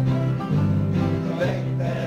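Archtop guitar and acoustic guitar strummed together in a steady rhythm, the bass note changing about twice a second. A man's singing voice comes in near the end.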